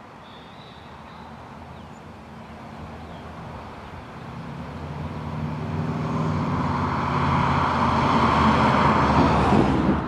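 1960 Chevrolet Bel Air with a swapped-in 6.2-litre LS3 V8 approaching and driving past, its engine and tyre noise growing steadily louder and loudest near the end.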